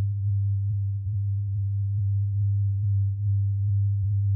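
Electronic music: a single low, steady synthesizer drone, a sustained bass tone with a faint higher overtone and a slight pulse, holding unchanged at the close of a track.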